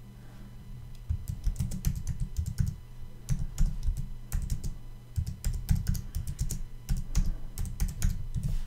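Typing on a computer keyboard: rapid bursts of key clicks with short pauses between them, starting about a second in.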